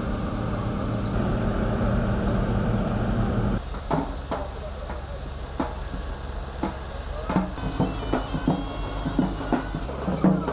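Combine harvester running with a steady engine drone. About three and a half seconds in, the sound changes to the hiss of grain pouring from the unloading spout, with scattered knocks.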